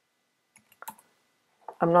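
A few quick computer keyboard keystrokes about half a second to a second in, a short burst of typing a chat message.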